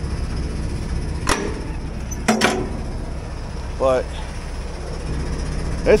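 A diesel semi truck engine idling with a steady low rumble. Sharp knocks come about a second in and again a second later.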